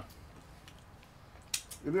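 A quiet pause with low steady room hum, a short hiss about one and a half seconds in, then a man starts speaking at the very end.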